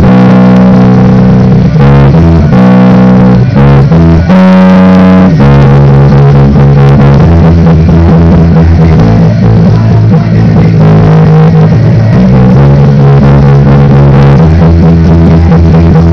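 Electric bass guitar playing a punk rock bassline in E major, loud, with notes held about half a second to a second and a half each before moving to the next.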